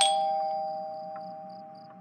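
A single bell-like chime struck once, two tones ringing together and fading away over about two seconds. Crickets chirp faintly underneath, about twice a second.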